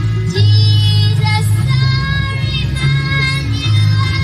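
A young girl singing a Christmas song into a microphone, amplified through stage loudspeakers over musical accompaniment with a steady bass line.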